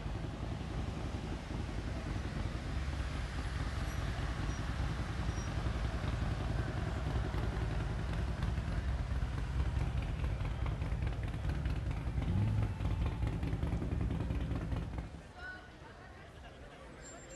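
Pagani Huayra's twin-turbo V12 running at low revs in slow street traffic: a deep, steady rumble that rises briefly about twelve seconds in and fades away near the end. People's voices are mixed in.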